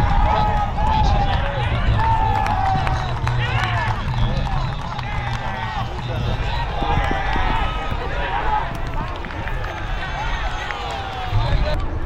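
Indistinct shouts and calls of players across an open football ground, rising and falling throughout, over a steady low rumble of wind on the microphone.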